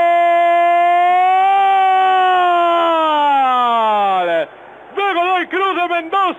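Radio football commentator's long held 'gol' shout calling a goal: one sustained note that swells slightly, then slides down in pitch and breaks off about four and a half seconds in. Fast, excited commentary follows near the end.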